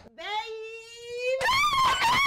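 Women's excited wordless shrieks: one long held cry rising slightly in pitch, then a higher, louder squeal from about one and a half seconds in.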